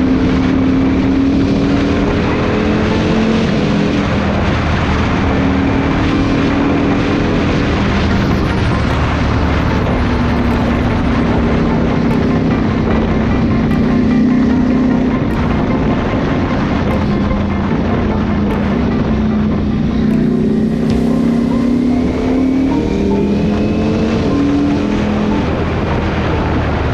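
Ducati V4 superbike engine heard from the rider's seat, its pitch falling and rising as the bike slows to a crawl in first gear and then pulls away again, over steady wind and road rush.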